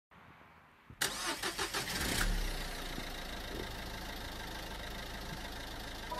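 An engine cranking in a quick run of strokes about a second in, catching, then idling steadily with a low hum.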